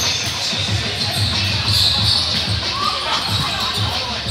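Indoor volleyball play echoing in a large gym hall: the ball thumping off players' arms and the floor, with voices and a steady beat of background music.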